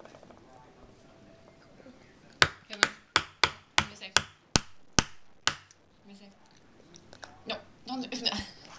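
A child knocking a small hard plastic capsule from a chocolate surprise egg to get it open: about nine sharp clicks over three seconds, roughly three a second, starting a couple of seconds in.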